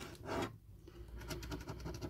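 A coin scraping the scratch-off coating of a paper scratch card: a louder scrape at the start, then a quick run of short, light strokes.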